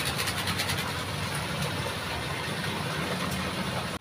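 A motor running steadily, a low continuous hum, with faint rapid ticking during the first second.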